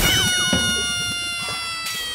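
Intro sound effect: one long, loud drawn-out note with many overtones, sagging slowly in pitch, with a few quick falling swoops in its first half second.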